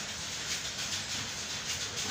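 Steady background hiss with no distinct events.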